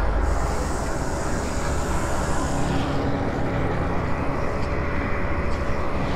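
Dark cinematic intro sound design: a steady, heavy low rumbling drone with faint held tones and a thin high hiss above it.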